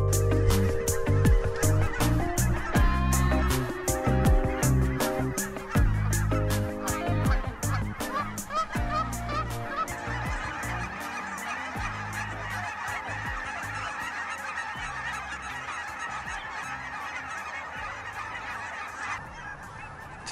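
A beat-driven music track fades out over the first several seconds, giving way to the dense, steady clamour of a large flock of waterfowl, with geese honking, massed on the water.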